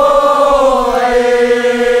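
A single voice holding one long sung note at a steady pitch.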